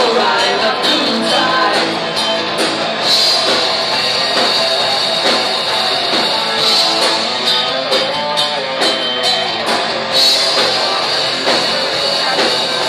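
Live melodic heavy metal band playing, with electric guitars and a drum kit beating steadily under the song.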